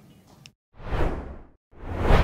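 Whoosh sound effect for an animated wipe transition: a swell of noise a little under a second long that rises and falls, coming out of a brief dead silence, with a second short swell starting near the end.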